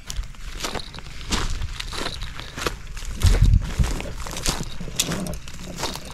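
Footsteps walking over dry grass and leaf litter on a river bank: a run of irregular steps, with a low thump about three seconds in.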